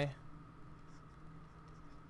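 Faint sound of a stylus writing on a tablet screen, a few soft strokes over the low background hiss.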